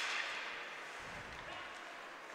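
Hockey arena background noise through the broadcast microphone: a single sharp crack at the start, then a faint, even hiss of crowd and rink noise that slowly fades.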